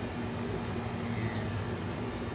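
A steady low mechanical hum with a constant droning tone over a background of even noise.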